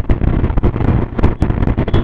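Wind buffeting the microphone of a moving scooter: a loud rumble with rapid, irregular thumps.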